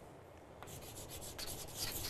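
Chalk writing on a chalkboard: a run of faint, short scratchy strokes that begins about half a second in.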